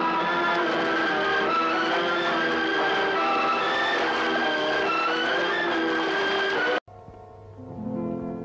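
Instrumental passage of an old Tamil film song, many instruments holding overlapping notes. It cuts off abruptly about seven seconds in, and quieter music begins.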